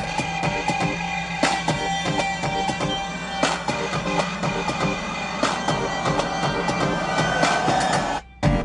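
Unfinished song demo played back from a computer through studio monitor speakers: a steady beat with held tones over it.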